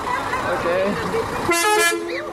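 A horn gives one steady, pitched toot of about half a second near the end, over voices and laughter.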